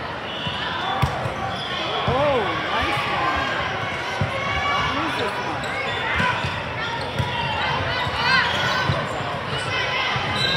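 Volleyball rally in a large indoor hall: a serve struck about a second in, then more sharp hits of the ball at irregular intervals. Short squeaks from sneakers on the court and echoing voices of players and spectators run throughout.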